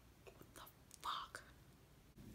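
Faint mouth sounds from a woman close to the microphone: a few soft lip clicks and one short breathy whisper about a second in.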